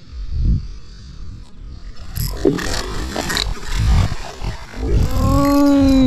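A hooked barramundi thrashing and splashing at the water's surface beside the boat, with noisy bursts of splashing a couple of seconds in, over a low rumble. Near the end comes a man's long, strained groan as the fish pulls hard.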